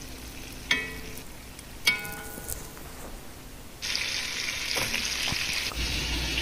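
Chicken frying in oil in a pot: two short ringing clinks, then a steady sizzle that comes in suddenly and loud about four seconds in.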